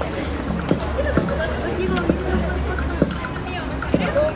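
Background music mixed with crowd chatter, with a few sharp knocks scattered through.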